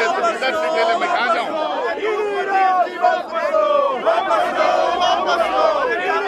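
A crowd of protesters shouting and talking over one another, many voices at once.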